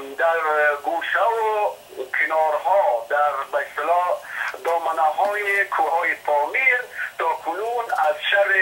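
A man speaking continuously, his voice thin and narrow like sound over a telephone line.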